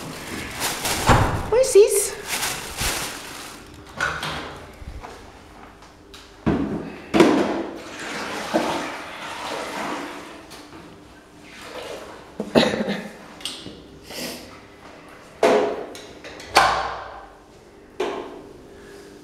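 A series of sudden knocks and thumps a few seconds apart, with indistinct voices underneath.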